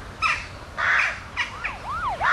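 Crows cawing, two harsh calls in the first second. Near the end an emergency-vehicle siren starts up with a fast, repeating rise-and-fall yelp.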